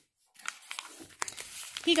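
Paper rustling and crinkling as the pages of a picture book are handled and turned, starting about half a second in, with a few sharp paper ticks.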